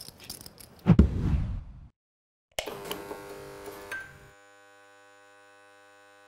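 Light clicking of poker chips and a low thump about a second in, then a short silence. After it comes a steady electronic hum made of several even tones, which runs on to the end.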